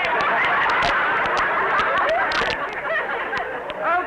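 A studio audience laughing together, one sustained crowd laugh with no break.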